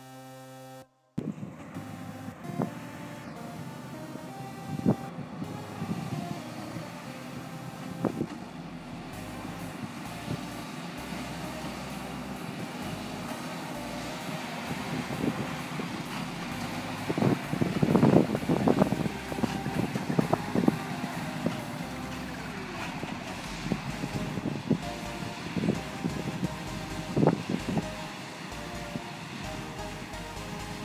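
Tractor and New Holland large square baler running while baling straw: a steady mechanical din with irregular knocks and thumps, loudest a little past the middle.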